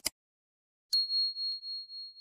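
Subscribe-button animation sound effects: a quick double click at the start, then about a second in a single bright notification-bell ding that rings on with a pulsing, fading tone.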